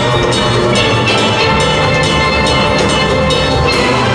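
A steel band playing live: many steel pans struck together in a dense, steady, loud stream of notes.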